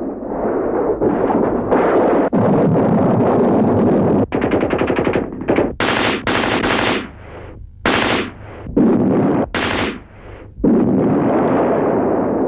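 Battle soundtrack of rapid automatic machine-gun fire in a series of bursts, some long and some short, broken by brief pauses.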